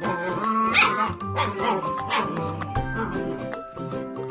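German Shepherd puppies crying out in short, rising yips as they play-fight, mostly in the first two seconds or so, over background music with a steady beat.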